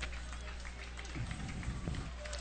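Faint murmur of spectators in the stands between plays, over a steady low hum.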